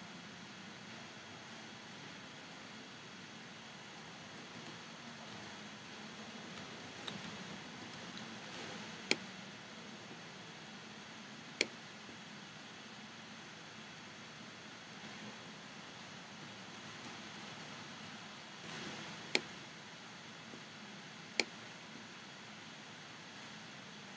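Computer mouse clicking four times over a faint steady hiss: two clicks about two and a half seconds apart near the middle, and two more about two seconds apart later on.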